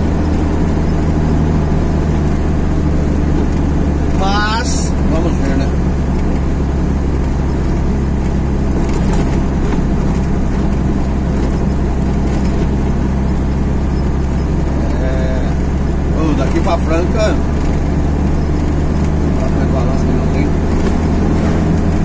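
A motor vehicle's engine and tyre noise heard from inside the vehicle as it drives steadily along an asphalt road: an even, low drone.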